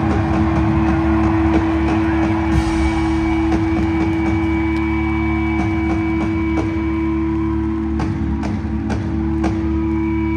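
Live rock band finishing a song: an electric guitar rings in a long, steady feedback drone over a low hum, with a few scattered drum hits.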